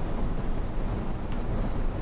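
Steady low rumbling noise on the microphone, like wind or handling noise, with a faint click a little past halfway.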